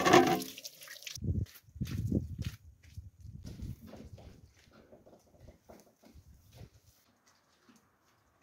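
Dairy cows in a barn being fed hay: a few loud, low animal sounds in the first four seconds, then fainter scattered sounds.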